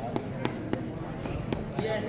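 A small stick tapping sharply against a bare foot, about six quick, slightly uneven taps.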